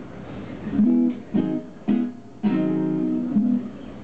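Acoustic guitar strummed: three short chords in quick succession, then a fourth held and left ringing for about a second.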